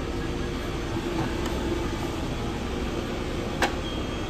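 Steady hum of commercial kitchen equipment and ventilation at a fast-food prep line, with a single sharp click about three and a half seconds in.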